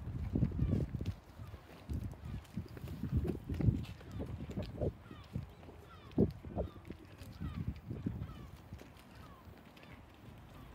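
Wild birds chirping faintly, with short high calls scattered through, over an irregular low rumble that is loudest in the first few seconds.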